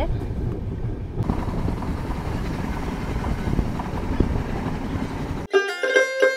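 Running noise of a moving passenger train heard inside the coach by an open window: a steady rumble of wheels on rails with wind noise. Near the end it cuts off abruptly and plucked-string music, banjo-like, starts.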